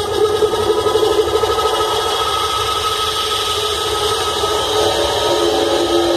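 Loud dance-performance music played over a hall's sound system, in a break without beat or bass: held synth-like tones over a hissing wash.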